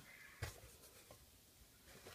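Faint rustling of individually wrapped pantyliners and pads being handled, with one sharp tap about half a second in.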